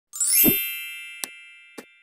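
Intro logo sound effect: a rising, ringing chime lands on a low hit about half a second in, and its tones fade away. Two short clicks follow near the end.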